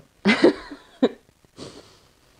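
Sniffing at paper perfume blotter strips: a noisy breath through the nose near the start that fades out, and a fainter second one around a second and a half in, with a brief voiced sound between them.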